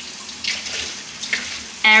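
Tap water running into a kitchen sink while dishes are washed by hand, a steady rushing with a couple of brief sharper sounds about half a second and a second and a half in.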